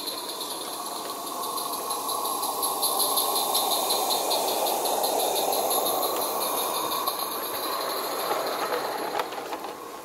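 Live-steam garden-railway model of the Rügen narrow-gauge locomotive 99 4633 (Herrmann kit) running past with its coaches: quick steam exhaust beats and wheels rattling over the rails. The sound builds to a peak around the middle and fades as the train moves away.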